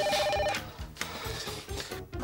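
Cordless home telephone ringing with an electronic trill. The ring cuts off about half a second in as the handset is answered.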